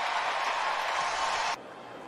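Ballpark crowd cheering a home run as an even roar of noise, cutting off suddenly about one and a half seconds in.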